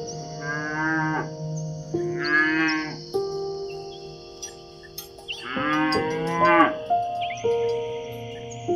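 Cattle mooing, three separate moos of about a second each, the last one the longest, over soft background music.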